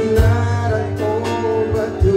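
Live band music played through a PA: a singer's voice over electric guitar and keyboard, sung into a handheld microphone.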